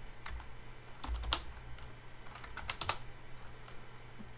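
Computer keyboard being typed on, a short run of irregular key clicks as a terminal command is entered.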